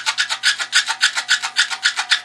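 Rapid back-and-forth scrubbing of a guitar's metal tremolo claw, about nine or ten quick scratchy strokes a second, cleaning old solder residue off it before soldering.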